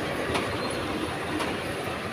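Escalator machinery running: a steady mechanical rumble with occasional clacks.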